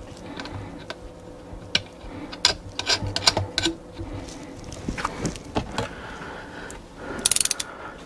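Small metal clicks and light taps as a nylock nut is threaded by hand onto a carriage bolt through an ABS plastic closet flange, with a quick run of rapid clicks near the end.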